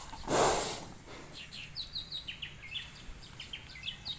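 A water buffalo's short, breathy exhalation close to the microphone about half a second in. After it, birds chirp faintly with a run of short, quick, high notes.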